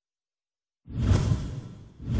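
A whoosh sound effect with a deep low end, made for an animated logo ident. It comes in suddenly out of silence about a second in and fades away, and an identical whoosh begins just at the end.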